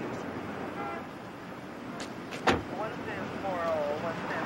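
A car door shuts once with a sharp clunk about halfway through, over the steady noise of a car and roadside. Short falling pitched tones sound near the end.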